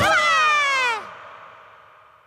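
A single comic downward glide in pitch, about a second long and rich in overtones, like a cartoon 'falling' effect, followed by a tail that dies away.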